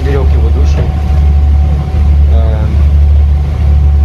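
Steady low drone of a passenger ferry's engine heard inside the cabin, with a faint steady hum above it.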